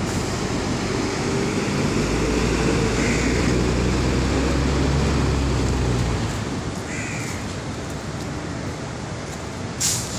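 Low city traffic rumble that swells about two seconds in and fades around six seconds, as a heavy vehicle passes, with a bird calling briefly twice, a few seconds apart. A sharp tap comes near the end.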